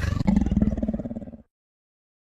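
The tail of a dinosaur roar sound effect: a low, pulsing growl that fades out about a second and a half in.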